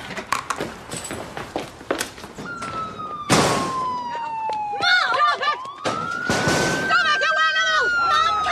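Police car siren sounding a slow wail, falling in pitch for a few seconds, then rising again and holding, with voices calling out over it. Before the siren starts there are several clicks and knocks, and two short bursts of noise break in around the middle.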